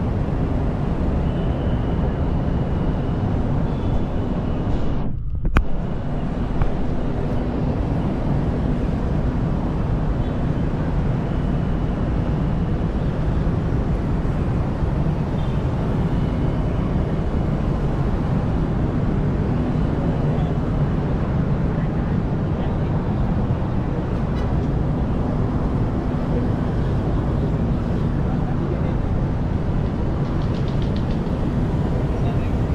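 Steady city traffic noise, a constant rumble of cars and other vehicles on a busy road, with a brief dropout about five seconds in.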